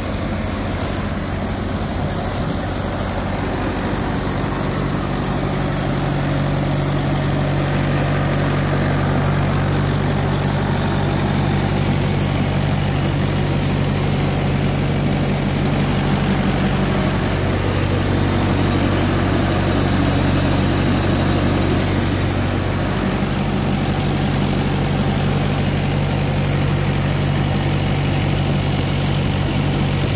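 A tractor's diesel engine running steadily under load, driving a multicrop thresher through its power take-off while crop is fed in: a continuous low drone mixed with the thresher's rushing noise as chaff is blown out.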